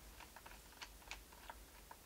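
Faint, irregular small clicks, several a second, of a precision screwdriver turning a screw into the plastic bottom cover of an Asus Eee PC 1000H netbook.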